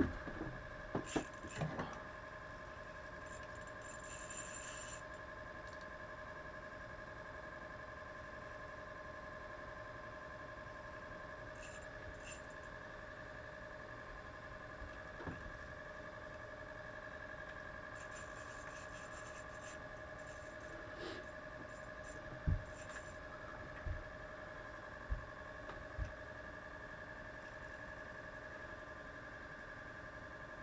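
Ice-fishing rod and spinning reel being handled and reeled: faint scratchy squeaks and scrapes, with a few sharp knocks in the second half, over a steady high whine.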